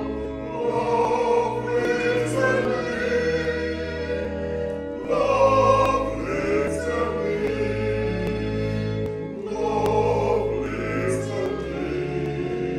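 A man's solo voice singing a church hymn, over an accompaniment of held low notes that change every second or two.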